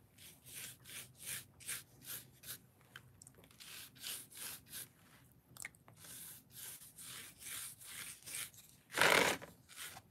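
A paintbrush scrubbing and stippling paint into rough-textured foam: short, scratchy bristle strokes, about two to three a second. About nine seconds in comes one louder, longer rush of noise.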